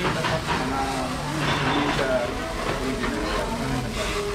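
Indistinct talk from several people over a steady low rumble.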